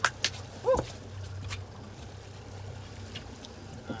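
A man's short whoop of excitement about a second in, over the steady low hum of the boat's outboard motor running. Two sharp clicks come right at the start, and a few faint ticks follow.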